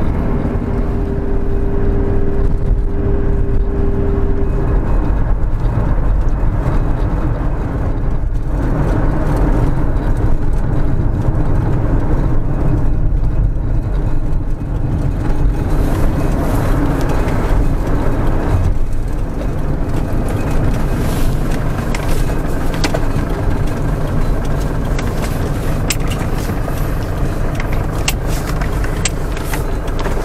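Camper van driving, heard from inside the cab: a steady low rumble of engine and road noise, with scattered light clicks and rattles in the second half.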